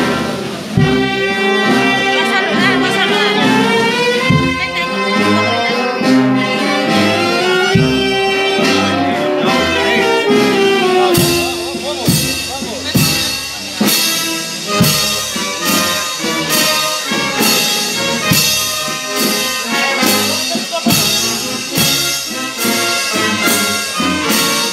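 Brass band of trumpets and trombones playing a slow processional march: long held chords with sliding notes, then about halfway through a steady slow beat of drum and cymbal strikes comes in.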